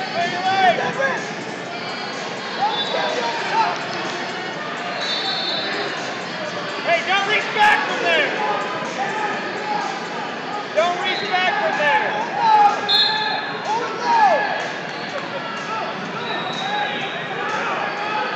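Echoing hubbub in a large wrestling hall: several voices of coaches and spectators shouting over one another, with short high squeaks from time to time and a sharp thump about eight seconds in.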